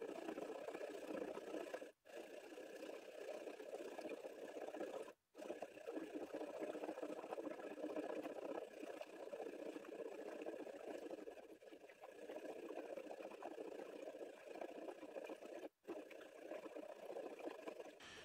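Faint sloshing of acid-and-peroxide etchant as a plastic tub is rocked to keep it moving over a copper circuit board while it etches. The sound cuts out briefly three times.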